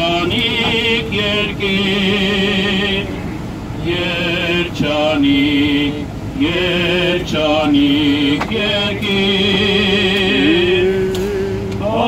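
Male voices singing an Armenian church hymn in long chanted phrases with wavering, ornamented pitch and short breaks between phrases, over the steady low hum of a vehicle driving.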